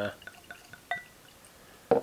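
Bourbon poured from a glass bottle into a small tasting glass, a quiet trickle with a faint ringing glass tick about a second in and a sharper click near the end as the pour finishes.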